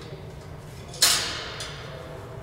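Compressed air hissing from the pneumatic valve and cylinder as the auger tube is lowered: a sudden hiss about a second in that fades away over the following second.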